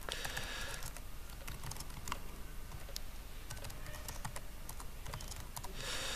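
Laptop keyboard typing: faint, irregular keystrokes.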